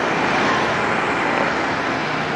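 Steady city street traffic: a constant wash of passing vehicles with no single one standing out.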